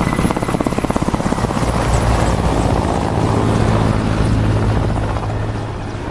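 Military helicopter running close by, its rotor blades chopping in a fast beat that starts abruptly. The chop then blends into a steady engine-and-rotor drone that eases off slightly near the end.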